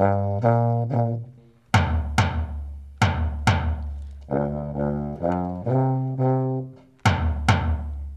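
A tuba plays short phrases of low notes that step up and down, answered each time by pairs of beats on a drum, the two taking turns. The tuba plays a phrase, the drum gives two double beats, and then the tuba plays a second phrase of about five notes before the drum answers again near the end.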